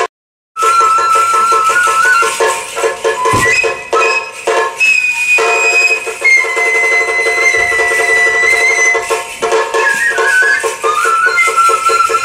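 Japanese sato kagura music: a bamboo transverse flute holding long, high notes that step from pitch to pitch over a steady run of quick drum strokes. The sound drops out completely for about half a second at the very start.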